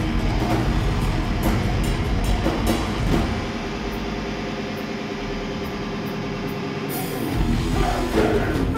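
Hardcore punk band playing live, loud: guitars, bass and drums with crashing cymbals. About three seconds in the cymbals and drums drop out and the guitars and bass ring on held chords. Near the end the drums crash back in.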